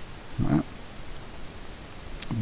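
A brief low throat sound from a man, about half a second in, over the faint steady hiss of the recording.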